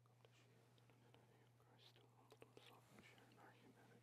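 Near silence: room tone with a steady low hum and a few faint small clicks and rustles about halfway through, from glass cruets and a cloth being handled on the altar.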